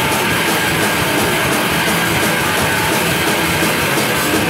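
A rock band playing live and loud: electric guitars over a drum kit, in a steady, unbroken stretch of the song.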